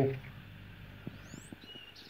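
Faint bird calls over a quiet outdoor background: a quick rising chirp about halfway through and a short, steady whistled note near the end, with a few small clicks around them.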